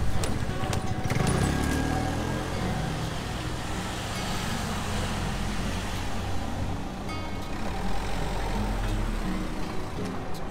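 City street traffic: a motor scooter's small engine rises in pitch as it pulls away about a second in, and a minibus engine rumbles low as it passes close by later.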